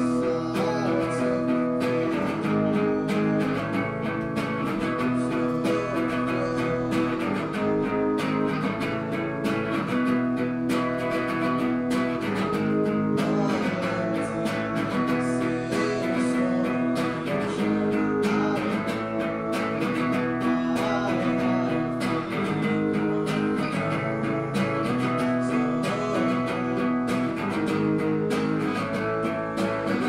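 Acoustic guitar strummed in a steady rhythm, its chords changing in a repeating pattern.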